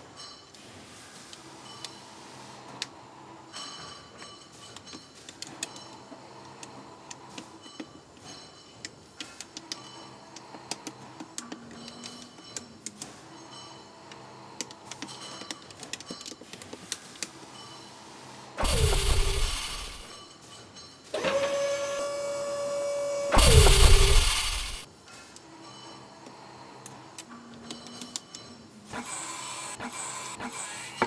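Plastic LEGO bricks clicking and snapping together under gloved fingers: many small, sharp clicks with light rattling. About two-thirds of the way through comes a much louder, unexplained stretch: a loud rushing burst that drops in pitch, a steady hum for a couple of seconds, then another loud rushing burst that drops in pitch.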